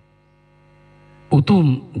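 Faint, steady electrical hum with many even overtones in a gap in the speech, growing slightly louder until a man's voice cuts in about a second and a half in.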